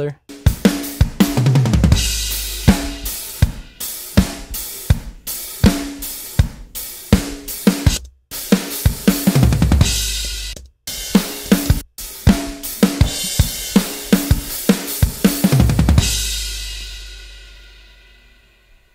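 Multitracked acoustic drum kit recording played back with close mics and living-room room mics mixed together: a fast kick, snare, hi-hat and cymbal groove, broken by a few brief stops. Near the end it finishes on a final hit that rings out and fades away over about two seconds.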